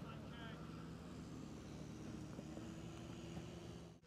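Faint outdoor background: a steady low hum, with a brief faint distant shout about half a second in.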